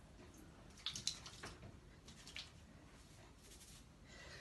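Hands scrunching damp, curl-cream-coated curly hair: a few faint, short squishes and rustles, about a second in, again just after two seconds, and near the end.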